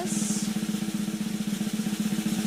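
A rapid, even snare drum roll over a steady low note, played as suspense while the prize wheel slows to a stop.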